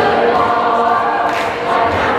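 Show choir singing together in a large gymnasium, holding long notes.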